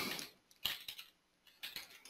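Computer keyboard being typed on: a few faint, quick key clicks in short bunches.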